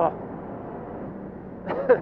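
Ferrari Challenge Evo race car's twin-turbo V8 running steadily at speed down a straight, heard as a dull, even rush of engine and road noise from inside the car. A short exclaimed 'oh' comes at the start, and a laugh begins near the end.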